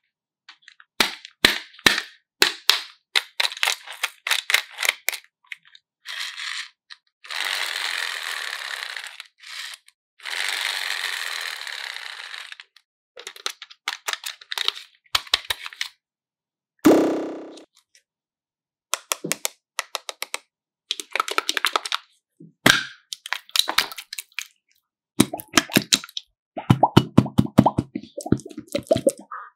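Many sharp clicks and snaps from a hard plastic toy being handled over a tray of slime, with two longer hissing stretches in the first half and a single ringing tone that dies away about halfway through. Near the end come wet squishing sounds as slime is squeezed in the hand.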